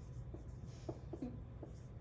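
Felt-tip marker writing on a whiteboard: faint, short strokes as words are written out by hand, over a low steady room hum.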